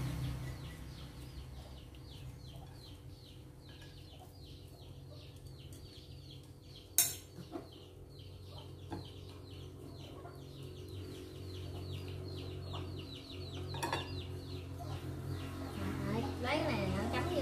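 A bird chirping in a rapid, steady series of short high calls, about four a second, with a low steady hum underneath. About seven seconds in, an eating utensil clinks sharply against a bowl, the loudest sound, with a softer clink near the end.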